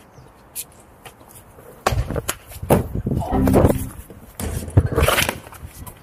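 Trainers striking and scuffing on brick and paving as a person jumps and lands, a run of irregular sharp knocks from about two seconds in, with a short vocal sound mixed in.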